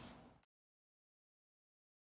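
Silence: a faint tail of the preceding sound fades out in the first half second, then the audio is completely silent.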